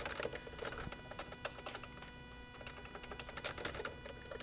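Computer keyboard typing: a scatter of faint, irregular key clicks.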